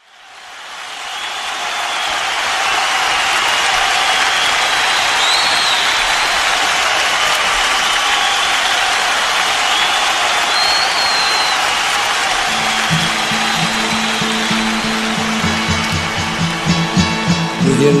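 Audience applause, a steady wash of clapping that fades in and holds. About two thirds of the way in, an acoustic guitar starts being played softly underneath, with picked notes near the end.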